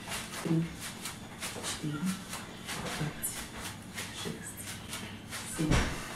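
Quick rustling and swishing of clothing and wrist weights from fast, repeated arm movements in a seated cardio exercise, with short voiced exhales about every second and a louder burst near the end.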